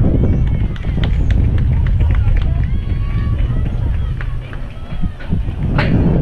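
Wind buffeting the camera's microphone in an uneven low rumble, with faint distant voices and a brief shout near the end.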